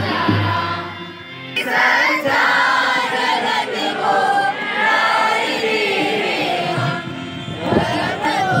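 A group of students singing a devotional prayer song together in chorus. There is a short break about a second in, and then the singing resumes.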